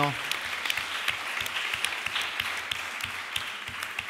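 Audience applauding, a patter of many hand claps that slowly fades away toward the end.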